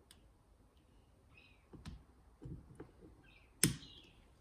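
Faint small clicks and scrapes of a steel wire circlip being worked into the pin-bore groove of a two-stroke piston with a pick, ending in one sharp click near the end.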